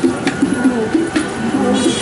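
A man's voice singing or humming low, with a wavering tune, broken by a few sharp clicks.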